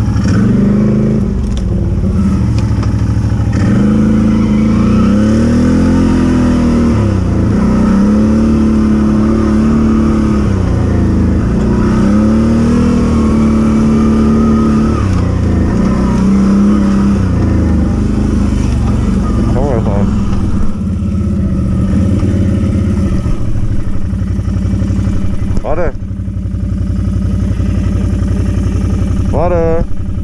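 ATV (quad bike) engine under way on a dirt track, its note swelling and dropping every couple of seconds as the throttle is worked, then running more steadily, with a few short quick revs near the end.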